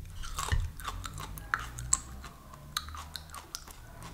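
A bite into a raw piece of aloe vera leaf, followed by chewing: a run of crisp, irregular crunches and clicks.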